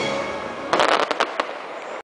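Aerial fireworks going off in a rapid cluster of sharp bangs and crackles, starting about three-quarters of a second in, with a few scattered pops after, over fading show music.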